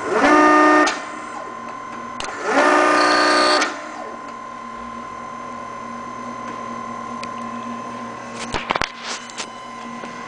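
REXA electraulic actuator's electric motor and hydraulic pump whining through two fast strokes, the first under a second long and the second just over a second, with a pause of about a second and a half between them. A few short clicks come near the end, over a steady hum.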